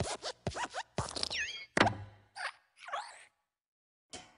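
Cartoon sound effects of the animated Pixar desk lamp hopping on the letter I: a run of springy knocks, the loudest about two seconds in as it lands, with short gliding metallic squeaks from the lamp's spring and joints. It falls silent near the end.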